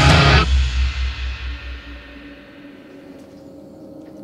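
Hard rock band with electric guitars, bass guitar and drum kit ending a song: the band stops about half a second in and the final chord and bass note ring out, fading over about two seconds to a faint steady hum.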